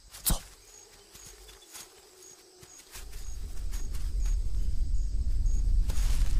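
Deep rumble of a giant beast approaching, a film sound effect, setting in about halfway through and growing steadily louder. A single sharp snap comes just after the start.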